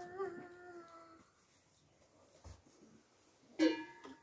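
A single hummed note, wavering at first and then held steady, fading out after about a second, as the group hum gets under way. A short sharp pitched sound comes near the end.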